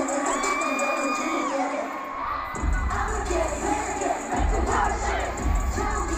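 A large concert crowd of fans screaming and cheering, with amplified pop music underneath. A heavy bass beat comes in a little before halfway and drops out for a moment about two-thirds through.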